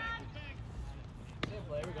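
Shouted voices urging a runner on, with one sharp knock about one and a half seconds in.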